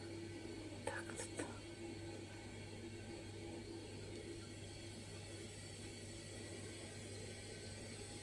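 Quiet room tone with a faint, steady low hum, broken about a second in by a single short spoken word.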